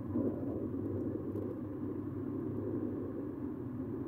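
A car driving at speed, heard from inside the cabin: a steady low rumble of engine and road noise.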